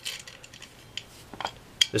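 Light metallic clinks of steel washers and bolts being handled and set onto a bicycle drive sprocket, a few small clicks about a second in and again near the end.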